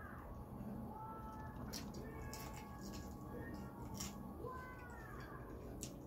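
Close-up eating sounds from hand-eating grilled chicken and rice: a few sharp mouth smacks and clicks. Under them are faint, high, falling pitched calls.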